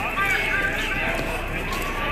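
Indistinct voices of several people talking at once, over the scuffing footsteps of someone walking on pavement.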